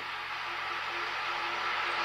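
Steady background hiss of the interview recording during a pause in speech, with a faint low hum beneath it.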